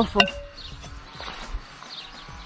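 A single sharp clink with a brief ring from a terracotta plant pot as a beetroot seedling is knocked out of it, followed by faint handling of the soil.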